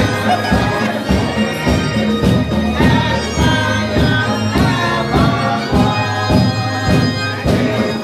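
Choir and congregation singing a hymn together over instrumental accompaniment, with a sustained low drone and a steady beat of about two strokes a second.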